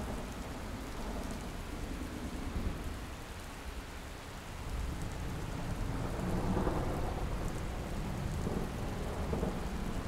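Steady rain-like noise with a low rumble, like rolling thunder, that swells louder about five seconds in.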